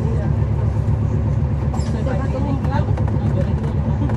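A transit bus's Cummins ISL9 diesel engine heard from inside the cabin, running with a steady deep rumble. Voices are faintly heard over it.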